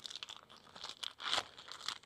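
Faint, intermittent crinkling and rustling of a plastic zip-top bag wrapped around an oil sample bottle as it is handled, with a few small clicks.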